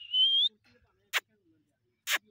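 Grey francolin calling: a single clear whistled peep about half a second long that rises in pitch, then a short sharp click-like note about a second later.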